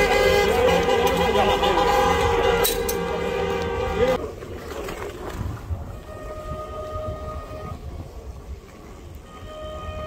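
Loud, steady vehicle horns sounding together over shouting voices, cutting off suddenly about four seconds in. After that a much fainter steady tone comes and goes twice.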